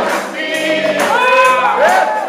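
Gospel singing in church: a woman's voice leads through a microphone while the congregation sings with her, holding long notes.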